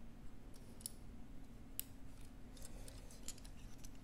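Faint, irregular clicks and ticks as a Majorette BMW 3.0 CSi die-cast toy car is handled and turned over in the fingers, over a steady low hum.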